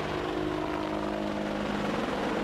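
An AH-64 Apache attack helicopter in a hover: its twin turboshaft engines and rotor give a steady whine of several held tones over a rushing noise.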